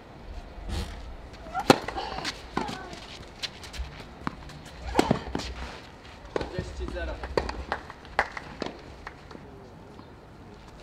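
Tennis rally on a clay court: a serve, then a series of sharp racket strikes on the ball, about one every second or so, with short bursts of voice between the shots.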